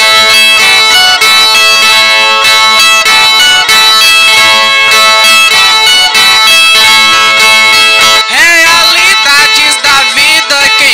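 Cantoria music: violas (Brazilian ten-string guitars) playing a full, drone-like run of held notes. About eight seconds in, a man's voice begins singing with a wavering, gliding line.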